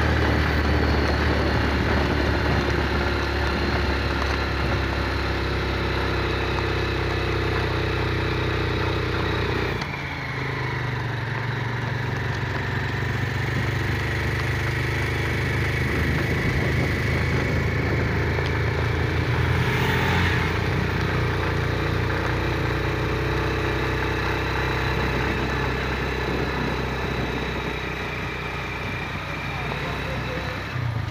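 Small motorcycle engine running steadily while riding, with road and wind noise; the level drops briefly about ten seconds in.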